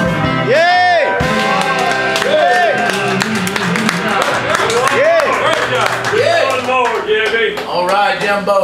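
Live country band music from electric guitar, pedal steel guitar and drums, with voices talking over it; a held chord fades near the start and loose sliding notes follow.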